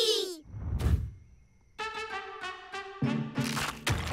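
A low thud about half a second in, then, after a short pause, cartoon background music on brass instruments in short, repeated notes, with lower notes joining near the end.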